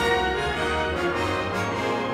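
Symphony orchestra playing, the full ensemble over sustained low notes.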